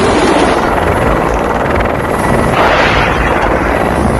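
Military helicopter in flight, heard from a camera mounted outside on the fuselage: a loud, steady rush of rotor, turbine and wind noise that grows brighter about two and a half seconds in.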